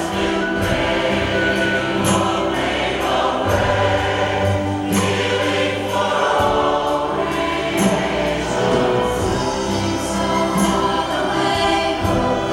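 A large choir singing a hymn-like anthem with orchestral accompaniment, steady and full throughout.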